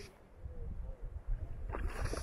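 Wind rumbling on the microphone at the lakeshore, with a brief cluster of short sharp splashy sounds near the end.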